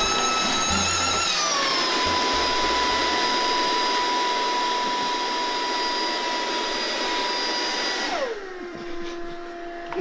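A small electric blower-type motor runs at high speed with a steady whine. The pitch sags slightly about a second and a half in, then holds until the motor winds down and slows about eight seconds in.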